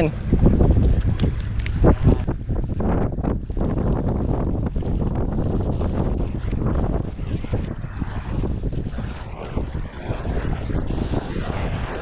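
Wind buffeting the microphone over waves splashing against the jetty rocks, with many short irregular splashes.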